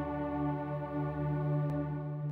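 Music: a sustained, organ-like keyboard chord held steady, with a faint click near the end.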